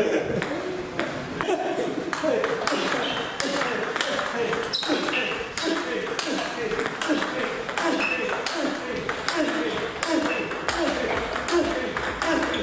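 Table tennis balls struck in quick succession during a multiball drill. Each ball gives a sharp click off a rubber-faced racket and off the table, in a fast, steady rhythm.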